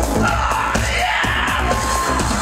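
Live electronic body music (future pop) played loud through a venue PA: a pulsing synth bass and beat with synth tones above, heard from within the audience.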